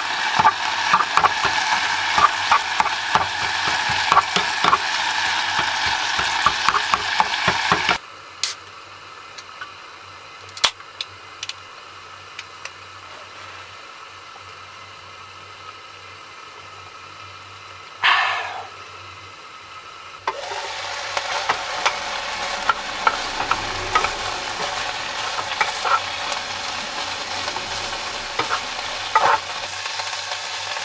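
Bacon frying in a pot on a gas hob, sizzling and crackling, with the utensil that stirs it clicking and scraping against the pot. The sizzle cuts out abruptly about a quarter of the way in, leaving a quiet stretch broken by a few clicks and one brief rush of noise. It comes back, a little quieter, about two-thirds of the way in.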